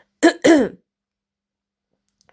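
A woman clearing her throat twice in quick succession within the first second.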